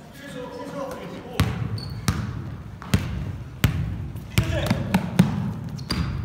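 Basketball being dribbled on a wooden gym floor: about six sharp bounces, roughly one every three-quarters of a second.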